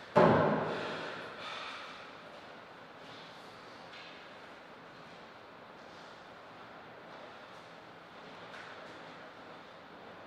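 A sudden loud vocal sound from a person, such as a forceful exhale or shout, fading over about a second and a half, followed by faint steady hall noise.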